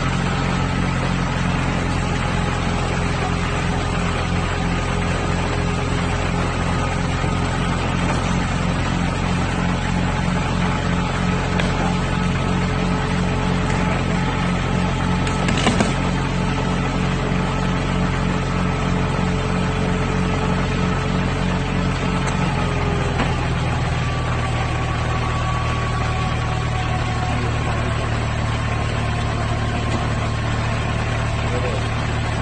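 A tow truck's engine running steadily while its winch drags an overturned car, with one short knock about halfway through as the car tips from its roof onto its side. Near the end the engine note shifts lower and smoother.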